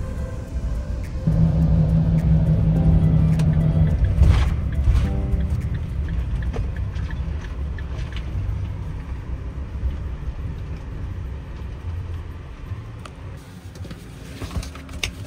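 Van driving on a gravel road, heard from inside the cab: low engine and tyre rumble with scattered clicks of gravel, easing off toward the end as it slows. Background music fades out in the first second or so.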